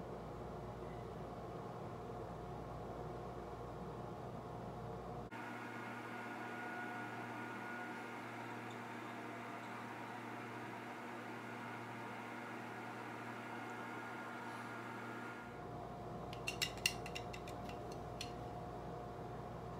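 Steady hum of a running fan with a few faint constant tones in it, and a quick cluster of light clicks near the end.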